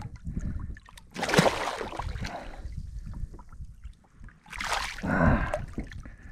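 Water splashing as a hooked mutton snapper thrashes at the surface beside a kayak, in two bursts: one about a second in and a louder one near the end.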